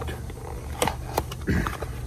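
A small paperboard parts box being handled and opened by hand: a few sharp clicks and scrapes of the flaps, the sharpest about a second in.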